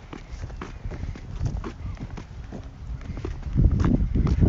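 Footsteps of people walking, with wind rumbling on the phone's microphone and short handling thumps, a louder burst of them about three and a half seconds in.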